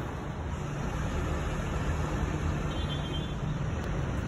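Steady low background rumble with no distinct splashes.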